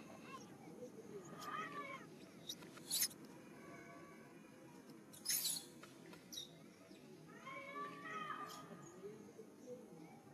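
Baby macaque squealing in distress while its mother bites it, a string of short, high arching cries about a second and a half in and again from about seven and a half to nine seconds. Two short sharp sounds come between them, around three and five seconds.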